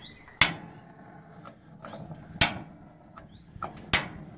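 Gas grill being lit: three sharp clicks from the burner control knobs' ignition, about two seconds and then a second and a half apart.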